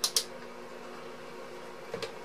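Two quick clicks of a clamp multimeter's rotary selector switch being turned on, followed by a steady faint hum.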